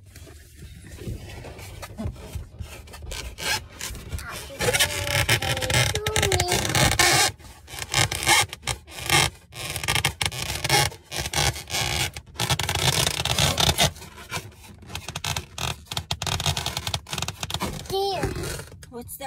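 Close, irregular rubbing and scraping noises, like things being handled and brushed right against the microphone.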